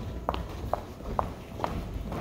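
Footsteps on a wooden stage floor, about four sharp steps roughly half a second apart.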